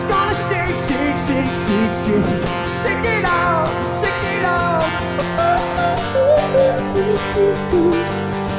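Acoustic guitar strummed in a steady rhythm, with a man's voice singing sliding, wordless runs over it.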